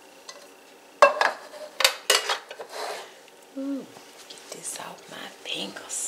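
Kitchen handling sounds: a sharp knock about a second in, then a run of short clatters and scrapes as emptied metal cans are set down and strawberry pie filling is worked into a glass casserole dish with a spatula.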